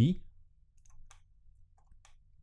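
A few faint, scattered clicks of a computer mouse and keyboard, about four in under two seconds, just after the end of a spoken word.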